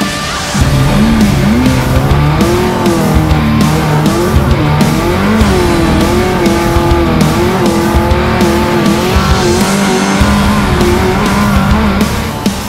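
Off-road race truck engine revving hard and repeatedly, its pitch rising and falling with throttle and shifts as the truck races over rough desert track. It comes in about half a second in, over background music.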